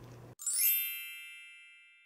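A bright chime sound effect: a single ding struck about a third of a second in, after dead silence, ringing with many high tones and fading out over about a second and a half.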